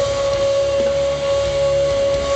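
Live symphonic metal band, with a singer holding one long, steady high note over guitars and drums.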